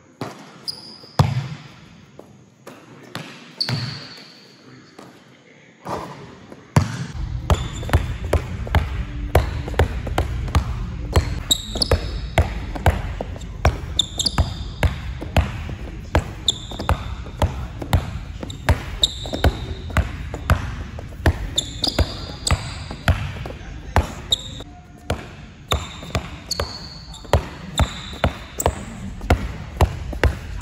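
Basketball dribbled on a plastic tile gym floor, each bounce echoing in a large hall. A few single bounces come first, then from about seven seconds in there is steady dribbling at about two bounces a second, with sneaker squeaks in between.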